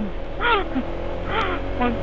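Honda ADV 160 scooter's single-cylinder engine running steadily while riding, with a low, even road and wind drone underneath. Short bits of speech come through about half a second and a second and a half in, and again near the end.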